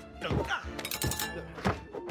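Pottery plates being thrown and caught, with cutlery knocking on a wooden table: several sharp clattering knocks over film score music.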